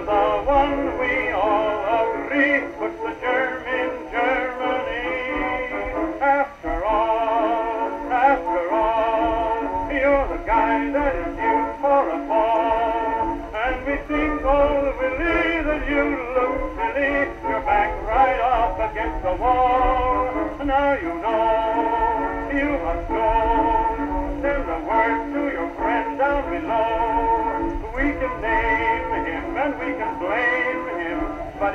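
A song played from an old record on a 1914 Victrola VV-X acoustic phonograph, with wavering, vibrato-laden tones. The sound is thin and boxy, with no deep bass and no high treble. A faint low rumble runs underneath.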